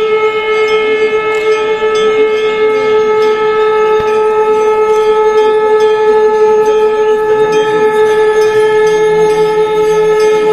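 Several conch shells (shankh) blown together in one long, steady, unbroken note with bright overtones.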